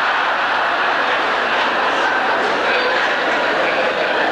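Large audience laughing and applauding together, a dense, steady wash of clapping and laughter.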